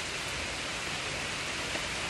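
Steady rain falling, heard as an even hiss.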